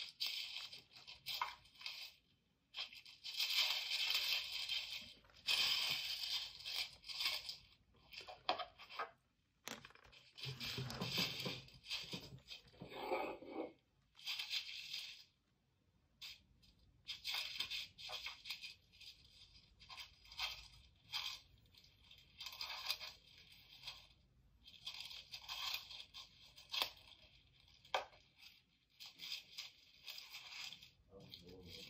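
Graphite pencil shading on sketchbook paper: runs of scratchy strokes with short pauses between them, and a duller rustle in the middle as the paper is moved.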